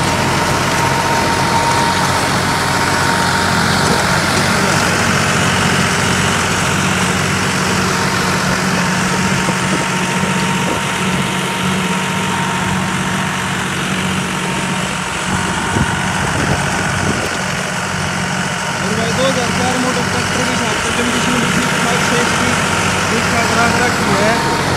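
John Deere 5310 tractor's three-cylinder diesel engine running steadily under load, driving a PTO rotary tiller that churns through soil and stubble; engine and tiller blend into one continuous drone.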